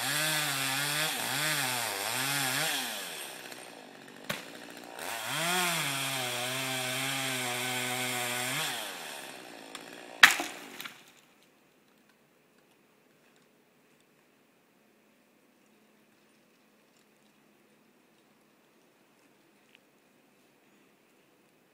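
Chainsaw revving up and down, then running at a steady, lower pitch under load in a cut and stopping about nine seconds in. A single sharp, loud bang follows about a second later, then near silence.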